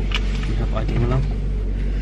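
Car engine idling, heard from inside the cabin as a low steady hum.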